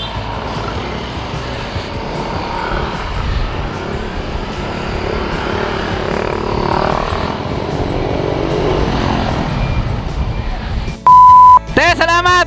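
Motorcycle engines running and pulling away, with wind on the helmet microphone, as a steady mixed rumble. Near the end a loud, steady beep lasts about half a second.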